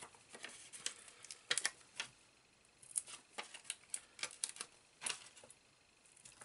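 Faint, irregular clicks and light rustles of card and sticky foam pads being handled. Square foam pads are being pressed by hand onto a paper card topper.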